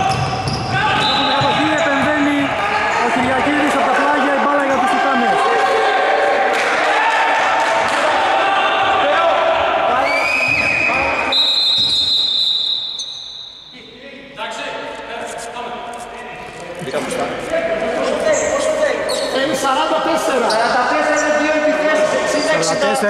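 Basketball game in a reverberant gym: players' voices and shouts over a bouncing ball. About ten seconds in a referee's whistle sounds for a second or two, stopping play, and the hall goes briefly quieter before the voices pick up again.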